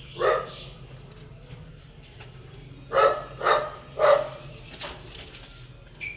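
A dog barking: one bark, then a few seconds later three barks about half a second apart.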